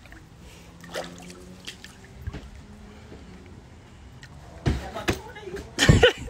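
Low background with faint voices, then a quick cluster of sharp thumps and knocks near the end.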